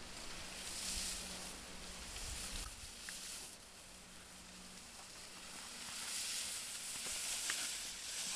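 Skis hissing and scraping over packed snow as a skier carves turns, loudest in two long stretches, the second swelling near the end as the skier comes close.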